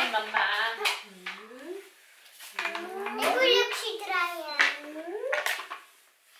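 A young child's voice babbling and calling out in wordless sounds that slide up and down in pitch, with a short pause about two seconds in and a few light clicks.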